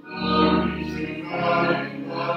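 A choir singing sustained, held notes. The singing breaks off briefly at the start and comes back in a fraction of a second later.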